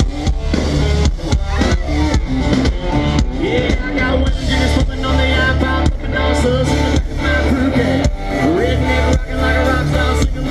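Live country-rock band playing loud through a festival PA: electric guitar over a steady drum beat and bass.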